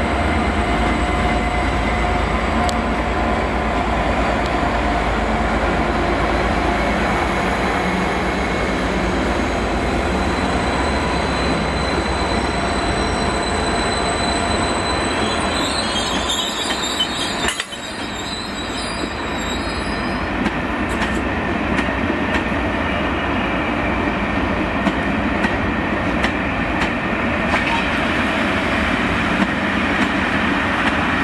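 Trains moving through a station: steady rolling wheel-on-rail noise with a thin, high wheel squeal through the first half. A brief drop in the sound comes a little past halfway, then passenger carriages keep rolling past steadily.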